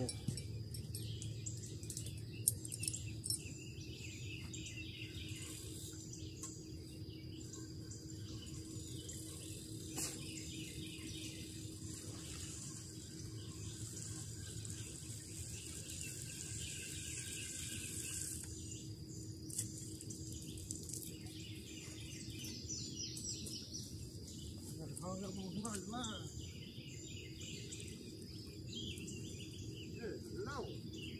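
Songbirds chirping and singing in repeated short phrases over a steady low background hum, with a faint steady high tone.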